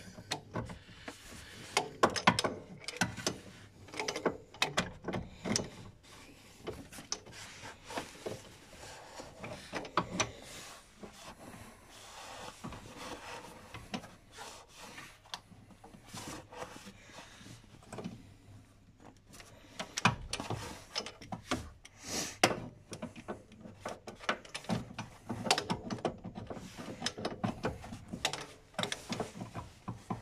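Irregular clicks, knocks and scrapes of a wrench and hand tools against engine parts while the accessory-belt tensioner is being worked to slacken the belt, with some handling noise; the loudest knocks come around two seconds in, ten seconds in and about twenty seconds in.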